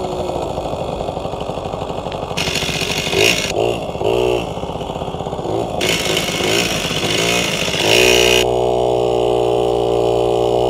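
1981 Yamaha QT50 moped's 49cc two-stroke single-cylinder engine running under way, its pitch rising and falling with the throttle, then holding steadier and higher for the last two seconds. Two bursts of hiss come and go over it.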